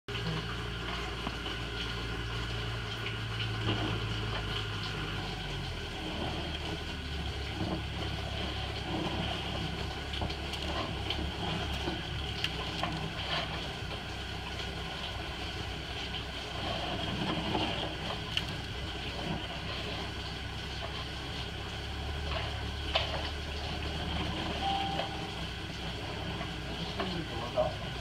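A machine's motor or engine running steadily with a low hum that drops in pitch about six seconds in and shifts again near the end, over faint scattered clicks.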